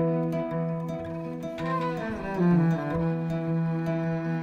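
Cello and kora duet: the bowed cello holds long low notes under the plucked strings of the kora. About halfway through, a quick falling run of notes sounds over the held notes.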